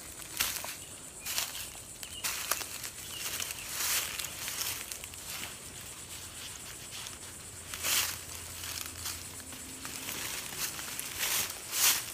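Footsteps crunching through dry leaf litter and pine needles, then rustling and scraping in the litter as a poncho corner is pulled out and staked to the ground. A steady high insect drone runs underneath.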